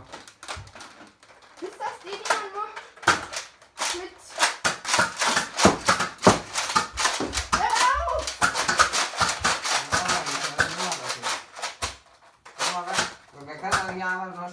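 Rapid plastic clicking and clattering from a Nerf blaster being handled, many sharp clicks a second for most of the stretch, with bits of a child's voice.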